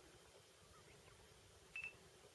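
Near silence with a faint hiss, broken near the end by a single short, high beep.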